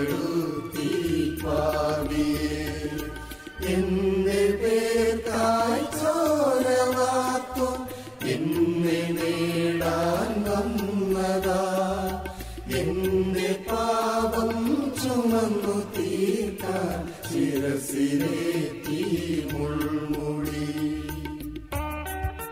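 Mixed choir of men and women singing a Malayalam Christian hymn of praise in slow, sustained phrases, over electronic keyboard accompaniment with a steady low bass. The voices stop just before the end, leaving the instrumental.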